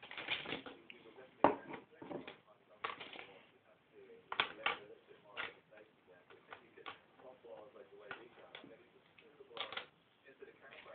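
Irregular clicks and clatter of small toys and a cup being handled and set down on a tabletop, with the loudest knock about one and a half seconds in.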